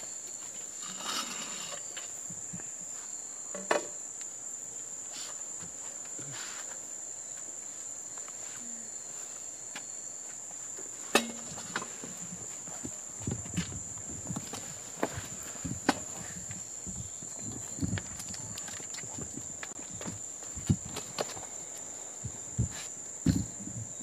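Crickets chirping in a steady high trill, with scattered sharp clicks and knocks in the second half.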